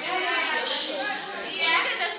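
Indistinct speech: voices talking in the room, with no clear words.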